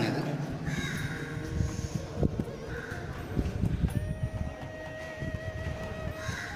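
Echoing ambience of a railway station pedestrian subway: irregular low knocks and rumble, faint voices, and a steady thin tone that starts about two-thirds of the way in.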